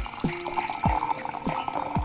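Tea poured from a porcelain gaiwan into a glass pitcher: a steady splashing stream that thins to a trickle near the end. Background music with deep, falling drum beats plays over it.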